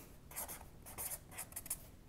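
Black felt-tip marker writing on paper: a run of short, faint strokes as letters are drawn.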